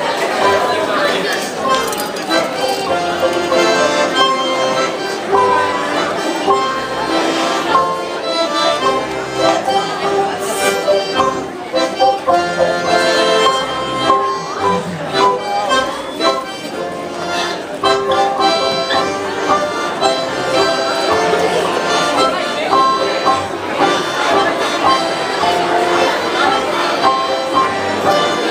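Garmoshka, a Russian button accordion, playing a folk dance tune with quick changing notes throughout.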